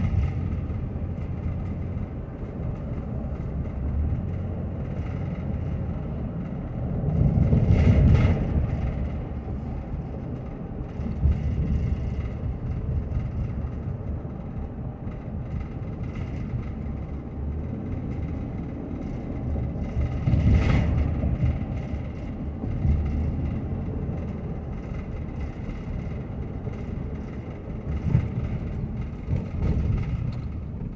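Car driving at low speed, heard from inside the cabin: a steady low engine and road rumble, swelling louder about eight seconds in and again around twenty seconds.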